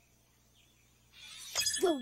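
Near silence, then about a second in a cartoon sparkle sound effect: a rising high shimmer with glassy chimes, marking the correct picture being picked. A voice starts right at the end.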